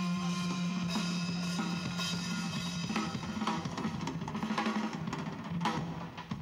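Live band with a drum kit: a held chord sounds over the drums at first, then from about halfway the drummer plays a fast run of snare and tom hits that builds toward the end.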